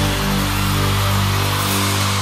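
Live band holding a long sustained chord near the close of a song, ringing on steadily after a final hit.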